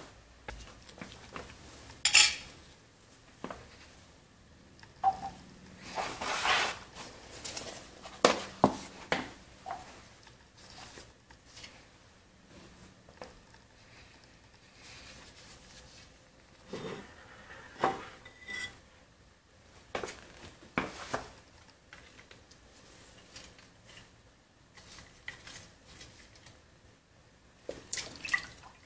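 Intermittent handling noises: scattered clicks, knocks and clatter as a plastic CRT projector assembly and a glass jar are moved and set down on a hard floor, the sharpest knock about two seconds in.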